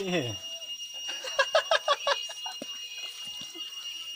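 A steady high-pitched tone runs throughout under voices, with a falling voice at the start and a quick run of short pitched sounds about one to two seconds in.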